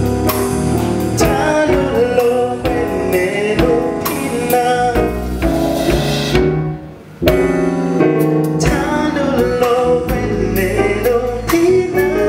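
Live band playing with a male lead singer, over drum kit, keyboard and bass, with backing vocals. The sound drops away briefly just past the middle, then the full band comes back in.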